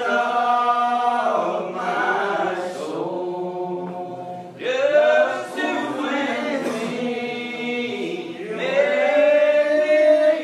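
Unaccompanied congregation singing a hymn slowly in the Old Regular Baptist style, many voices holding long drawn-out notes. A new sung phrase begins about halfway through and again near the end.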